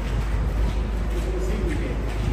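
A bird giving one low, slightly falling call about halfway through, over a steady low rumble.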